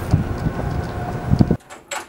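Wind buffeting the microphone outdoors, a loud low rumble that cuts off abruptly about one and a half seconds in, leaving quiet room tone with a single click.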